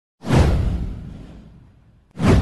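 A whoosh sound effect with a deep low rumble: it swells in suddenly about a fifth of a second in, sweeps down in pitch and fades over about a second and a half.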